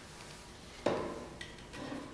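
Hinged plywood board with a hammer hung from it being handled: one sharp wooden knock about a second in as it is grabbed, then softer rubbing and knocking as the board and hammer are lifted.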